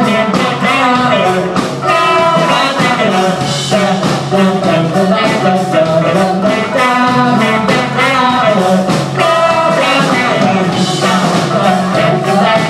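Live rock band playing with sung vocals: drum kit keeping a steady beat under bass guitar, electric guitars and a Yamaha MO6 synthesizer keyboard.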